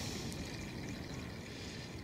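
Faint, steady background hiss with no distinct sounds standing out.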